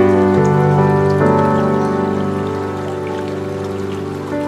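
Slow ambient piano music, held chords ringing over the steady rush of flowing stream water. A new chord enters just after a second in and slowly fades.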